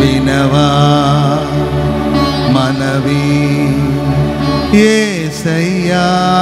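Live Telugu Christian worship song: a man sings a drawn-out, ornamented melodic line with vibrato into a microphone over sustained keyboard backing. Near the end his pitch slides down and back up.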